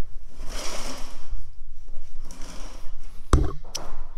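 Rustling and footsteps of a hand-held camera being carried, over a low rumble, with a sharp knock a little past three seconds and a lighter click just after.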